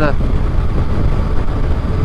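Steady rush of wind and road noise from a microphone inside a motorcyclist's helmet, riding a Yamaha Tracer 900GT at about 60 mph, mostly low rumble.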